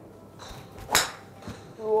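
Titleist TSi2 fairway wood (13.5° 3-wood) striking a golf ball off a range mat: one sharp, loud impact about a second in.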